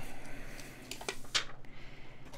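Thin plastic protective film being peeled off a smartphone's glass back: a soft rustle with a couple of short crackles about a second in.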